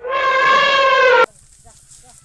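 Elephant trumpeting: one loud, harsh call of just over a second, falling slightly in pitch, which cuts off abruptly. Faint outdoor sound with a few small chirps follows.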